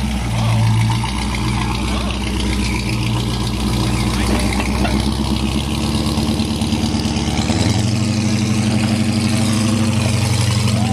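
Range Rover Classic's engine working under load as the truck crawls up a steep slickrock ledge, running steadily and then speeding up about three-quarters of the way through.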